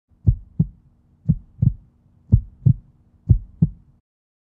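Heartbeat sound effect: four low double thumps (lub-dub), about one pair a second.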